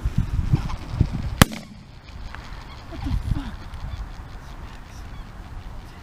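Greater white-fronted geese (specklebellies) calling overhead, with a single shotgun shot about a second and a half in.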